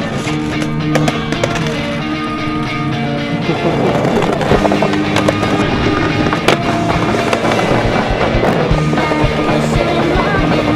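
Music over skateboard sounds: wheels rolling on concrete and the board clacking against curbs, with the sharpest clack about six and a half seconds in.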